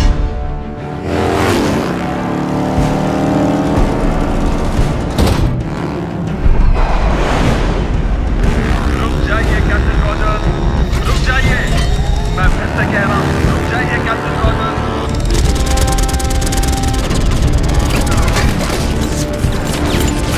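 Action-film soundtrack: dramatic score music mixed with repeated booms and the engine noise of a low-flying jet aircraft and a motorcycle, with a heavy rumble that swells about six seconds in.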